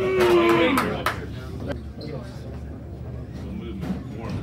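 A man's long held shout in the first second over crowd chatter, then the chatter of the crowd with a few sharp knocks.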